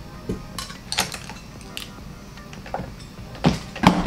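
Makeup brushes and items on a table being picked up and handled, giving a scatter of light clicks and clinks, the loudest near the end.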